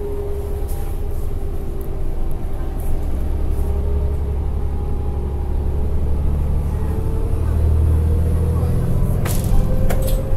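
Inside a New Flyer D40LF transit bus under way: its Cummins ISL9 diesel and Allison six-speed drivetrain with road noise, a deep steady rumble. A faint whine rises in pitch over the last three seconds as the sound grows louder, and there is a sharp click near the end.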